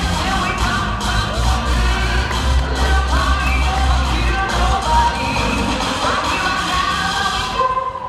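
Upbeat pop music with singing and a heavy bass beat, played loud in a gym, with a crowd cheering over it; the music drops out near the end.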